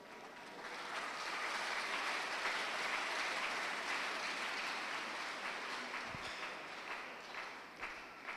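Congregation applauding: the clapping swells over the first couple of seconds, holds, and tapers off toward the end.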